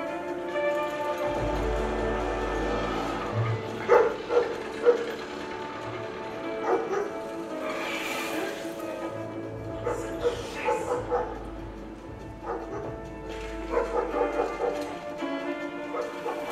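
Soundtrack of an animated film clip played over a lecture hall's loudspeakers: music with short, sharp sound effects, a cluster of them about four seconds in and more near ten and fourteen seconds.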